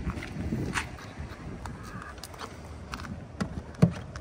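A J1772 charging connector with its Tesla adapter being handled and plugged into a Tesla Model 3's charge port. There are scattered small plastic clicks and knocks, then one sharper clunk near the end as it goes in.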